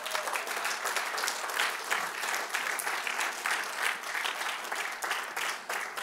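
Congregation applauding: many hands clapping at once in a steady patter.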